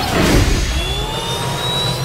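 Cartoon sound effect of a transport machine powering up: a deep engine-like rumble that swells about half a second in, with a thin high whine rising slowly over it.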